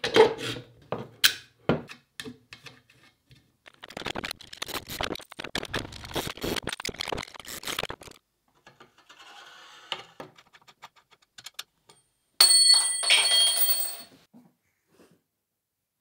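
Assembly clatter from a folding camera arm: steel shoulder bolts clicking into bushings in plywood joint blocks and square aluminium tubes knocking and clinking as the joints are put together, in short bursts of quick clicks with pauses between. A brief clatter with a metallic ringing comes about twelve seconds in.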